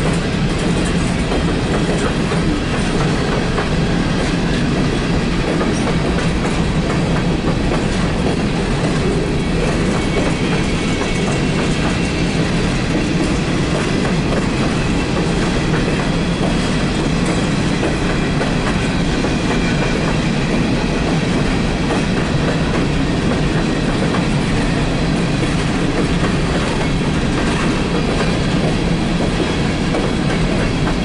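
Empty coal cars of a CSX freight train rolling steadily past, a continuous rumble laced with rapid clicking and clatter from the wheels on the rails.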